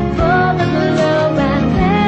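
A song playing: a voice singing over instrumental accompaniment with a regular beat.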